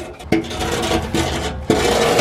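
Steel exhaust pipe scraping and grating against the truck's underside and hangers as it is worked loose and pulled out, with a faint metallic ring. The scraping starts sharply about a third of a second in and gets louder again near the end.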